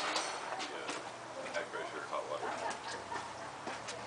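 Indistinct voices of people talking in the background, with scattered sharp knocks and clacks from work equipment being handled, about half a dozen over the few seconds.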